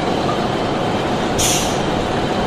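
Recorded bulldozer sound effect: a heavy diesel engine running steadily, with a short hiss about one and a half seconds in.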